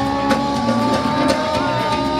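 A live band playing: a drum kit keeps a steady beat under long, held pitched notes, heard as amplified stage sound.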